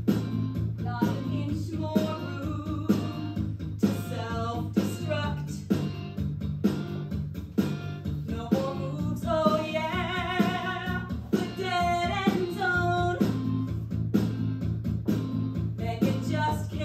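A solo singer performing a musical-theatre rock song with vibrato, over a band accompaniment of guitar, bass and a steady drum beat.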